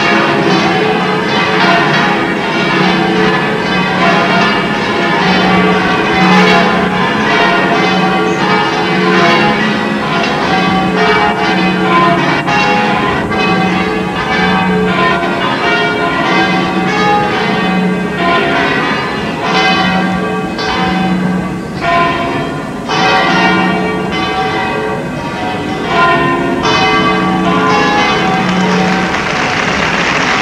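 The Giralda tower's 25 church bells ringing all together in a full peal, with many bells at different pitches struck over and over and their ringing overlapping. A deep bell strikes about once a second beneath the higher ones.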